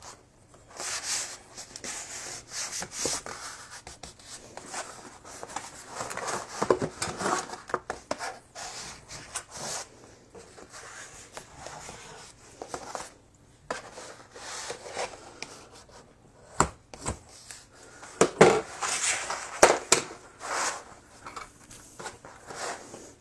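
Hands rubbing and creasing a large sheet of heavyweight gessoed watercolour paper, the stiff sheet rustling irregularly as it is pressed, lifted and flexed. A few sharp knocks come in the last few seconds.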